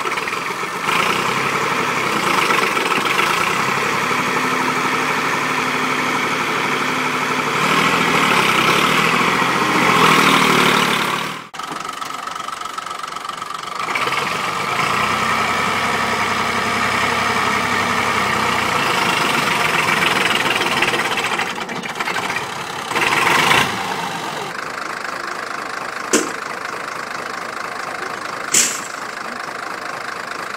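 Massey Ferguson 240 tractor's three-cylinder diesel engine running hard under load while pulling a heavily loaded trailer, its revs rising and falling and climbing for a few seconds before easing off. Two short sharp clicks sound near the end.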